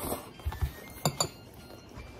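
Utensils knocking and clinking against ceramic bowls: a couple of dull knocks about half a second in, then two sharp clinks with a short ring just after a second in.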